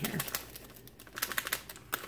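Crinkling of a paper packet of instant pudding mix as it is shaken and squeezed empty over a mixing bowl, in a few quick runs of crisp ticks.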